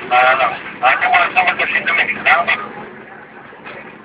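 A voice, loud for about the first two and a half seconds, over the steady running noise of a Volvo FH12 420 truck heard from inside its cab.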